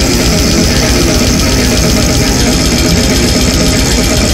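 Brutal death metal: a loud, dense passage of heavily distorted guitars over rapid, relentless drumming, a thick steady wall of sound.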